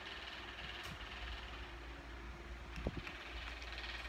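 Steady low background rumble with a faint hiss, broken by a single soft thump a little before three seconds in.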